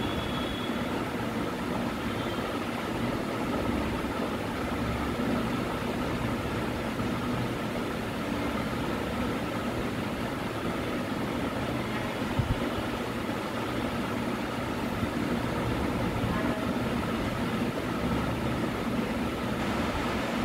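A steady mechanical hum with background noise, holding an even level throughout, with a brief low knock about twelve seconds in.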